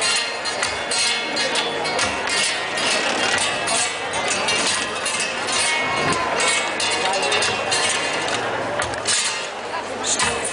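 Live flamenco fandango music played through stage speakers, with sharp rhythmic clapping and clicks about two to three times a second.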